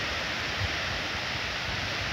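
Small, gentle sea waves washing onto a sand and pebble beach, a steady, even hiss with a low, irregular rumble underneath.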